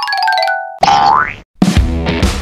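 Background music and sound effects laid over the footage: a quick descending run of bright notes, then a rising comic 'boing' glide. After a short break, a rock track with drums starts near the end.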